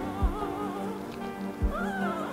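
Newborn puppy whining in wavering high squeals, with one rising and falling cry near the end, over background music.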